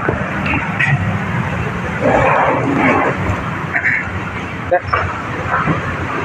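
Busy street-side ambience: a steady wash of traffic noise with a low hum, and indistinct voices of people talking nearby.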